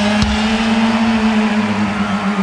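Live rock band holding a sustained low droning note as the song ends, with one drum hit shortly after the start.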